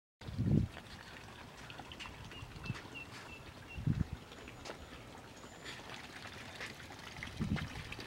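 Small garden-pond waterfall trickling and splashing steadily into the pond, with three short low thumps along the way.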